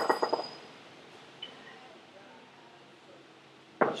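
Kettlebell snatch: a short rattling clatter with a brief high metallic ring at the start as the bell swings back between the legs, then quiet. About four seconds in comes a sharp, falling vocal exhale or grunt as the bell is driven overhead.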